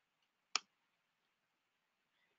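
A single sharp mouse click about half a second in, advancing the presentation slide; otherwise near silence.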